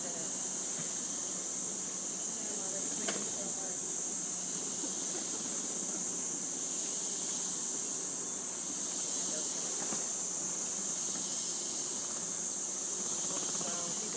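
Rainforest insects calling in one continuous, steady, high-pitched drone.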